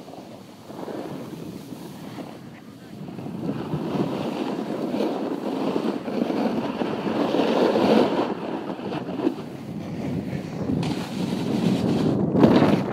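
Wind rushing over a phone microphone, with a snowboard sliding and scraping over packed snow while riding downhill. It gets louder about three seconds in and swells and dips after that.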